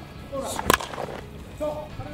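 A baseball bat hitting a pitched ball in batting practice: one sharp crack about two-thirds of a second in.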